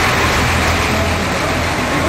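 Heavy lorries' engines running on a mountain road: a loud, steady noise with a low hum underneath.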